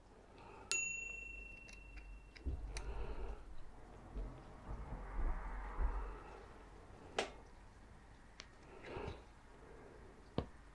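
Small hand tools and fingers working at a bicycle's hydraulic brake lever: a sharp metallic ping under a second in that rings on for about two seconds, then handling bumps and a few scattered clicks.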